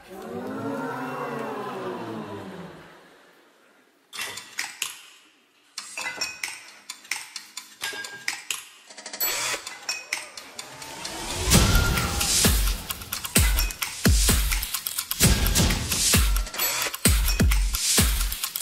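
A person laughs briefly, then after a short pause sharp clicks and metallic taps start up sparsely. They build into loud electronic dance music with heavy bass beats from about eleven seconds in.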